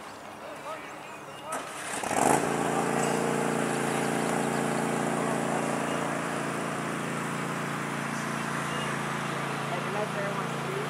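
A motor starts up about two seconds in and then runs at a steady pitch, after a couple of seconds of distant shouting.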